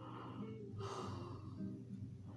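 Faint background music with a short, soft breath-like hiss about a second in.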